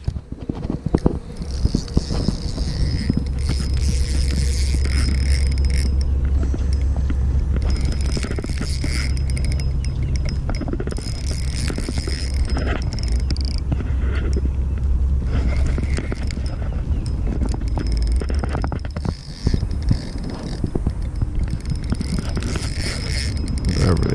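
A steady low rumble with small mechanical clicks and scrapes from a fishing rod and reel while a big, hard-pulling fish is fought on the line.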